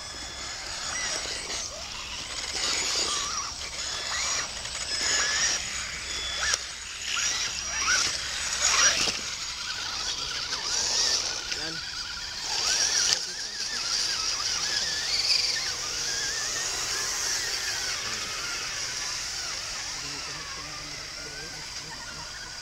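Scale RC crawler trucks driving through mud and puddles: small electric motors running, with splashing as they push through the water, and people talking in the background.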